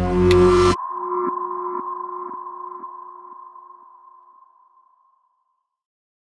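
Electronic logo sting: a loud, deep musical hit that cuts off under a second in, leaving two steady tones with faint ticks about every half second, fading away over about four seconds.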